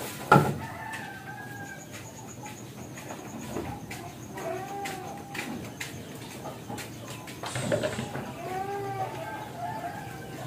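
A sharp knock just after the start, then chickens clucking and calling a few times, most clearly about halfway through and again near the end.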